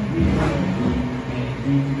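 Background music: an instrumental passage of a pop song, with held notes changing in steps, between sung lines.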